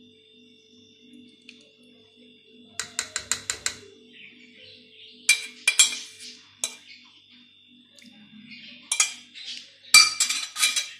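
A metal spoon clinking and scraping against the rim of a metal pot as the last of the chocolate cream is scraped out. About three seconds in comes a quick run of six or so taps, then single sharp clinks and scrapes.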